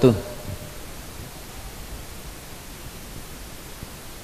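Steady hiss of background noise on an amplified microphone recording, with the tail of a man's drawn-out chanted greeting fading out at the very start.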